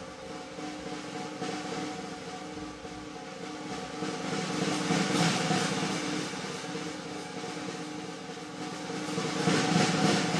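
Snare drum roll on a jazz drum kit, building in two swells, about halfway through and again near the end, over a low sustained drone.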